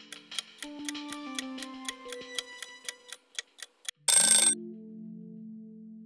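Quiz countdown-timer sound effect: clock ticking about four times a second over light background music. About four seconds in, a short, loud alarm-bell ring signals that time is up, and the music carries on.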